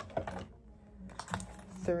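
Several light plastic clicks and taps as a highlighter pen is slid into a small canvas zip pouch, knocking against the highlighters already inside.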